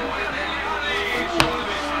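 Televised football match: stadium crowd noise under a commentator's voice, with a single sharp knock about one and a half seconds in.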